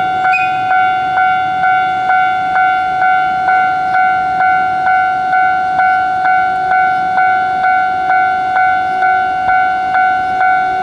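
Japanese railway level-crossing alarm ringing, its electronic two-tone "kan-kan" bell struck about twice a second while the crossing is closed for an approaching train.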